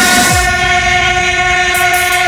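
Break in an electronic dance mix: the beat drops out after a falling bass sweep and a single loud, held horn-like tone with overtones carries on alone.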